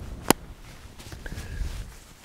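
Rustling and handling of a fleece-lined softshell jacket's hood as it is pulled up over the head, with one sharp click just after the start. Low wind rumble on the microphone underneath.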